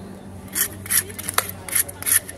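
A toothed fish scaler scraping scales off a large catla carp: a run of short scraping strokes starting about half a second in, with one sharp click near the middle.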